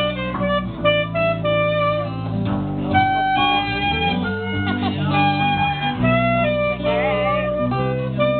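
A live band of acoustic guitars and an electric guitar playing an instrumental passage, plucked and strummed, under a melody of long held notes that waver in pitch about seven seconds in.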